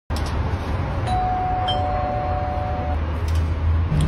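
Two-note electronic doorbell chime: a higher note, then a lower one, both held steadily for about two seconds, over a steady low hum.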